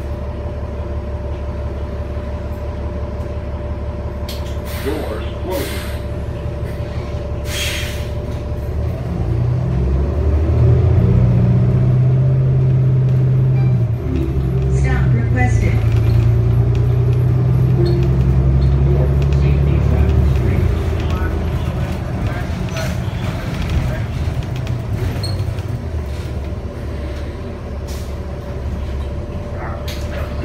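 Cummins L9 inline-six diesel of a New Flyer XD35 transit bus heard from inside the cabin: idling at first, with a couple of short hisses of air, then pulling away, louder and rising in pitch, with a brief dip at a gear change through the Allison automatic, before easing off near the end.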